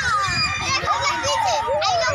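Several children's high voices calling out and chattering over one another, their pitch sliding up and down.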